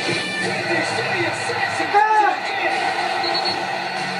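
Voices over background music from a basketball highlight video's soundtrack.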